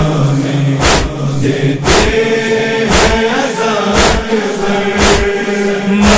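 Male voices chanting a drawn-out noha lament together, over a sharp, even matam beat of chest-striking about once a second.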